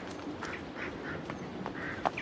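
Several short bird calls, duck-like quacks, scattered through the moment, with a few light footfalls as someone runs.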